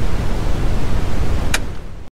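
Loud TV-static hiss sound effect, with a single short click about a second and a half in.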